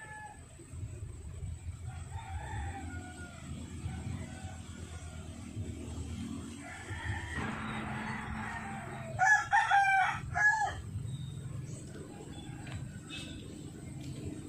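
A rooster crowing once, about nine seconds in, in a broken series of high calls lasting under two seconds; fainter chicken calls come earlier, over a low rumble.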